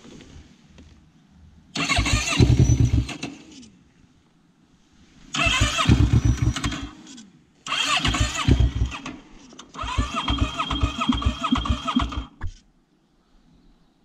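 Electric starter cranking a 450 sport quad's engine in four bursts of about two seconds each, the engine turning over with fast, even pulses but never firing: a breakdown that the owner puts down to an empty tank, a flat battery or a failed fuel pump.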